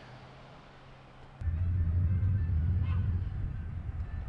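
A steady low rumble starts suddenly about a second and a half in, after a quieter start.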